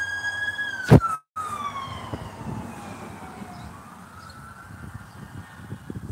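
An emergency vehicle's siren wailing: a high held tone that slides down about a second and a half in, then climbs again more faintly. About a second in there is a sharp click, and all sound cuts out briefly.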